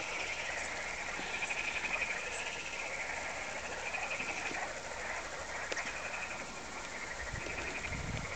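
Frogs croaking in a chorus: short pulsed trains of calls, each about a second long, repeating one after another.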